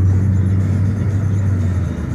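Low, steady drone of a car driving, heard from inside the cabin, easing off near the end.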